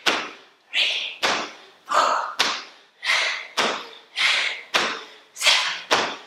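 Feet of two people landing squat jumps on a hard floor: a steady run of thuds, about two a second as the two jumpers land slightly out of step, each ringing briefly in the room.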